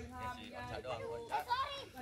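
Several girls' voices talking and calling out over one another while they play.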